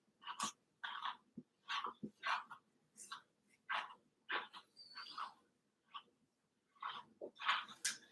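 Slicker brush being worked through a Cavoodle's curly ear hair: faint, short scratchy strokes, about two a second at an irregular pace.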